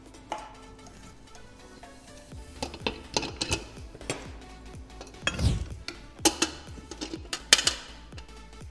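Stainless steel mixing bowls and metal utensils clinking and knocking as they are handled, a series of sharp clatters with a heavier thump about halfway through, over faint background music.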